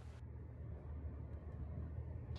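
Steady low engine rumble heard from inside a vehicle cab while driving.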